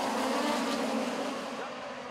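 Several USAC midget race cars' four-cylinder engines running hard around a dirt oval, a steady engine drone that slowly fades.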